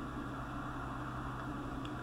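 Steady low electrical hum with a faint hiss, the recording's background noise, with one faint tick near the end.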